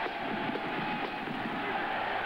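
Large stadium crowd cheering a touchdown: a steady wall of many voices.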